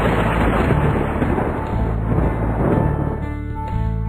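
Thunder sound effect, a noisy rumble that slowly dies away, over a children's song backing track whose notes come through more clearly near the end.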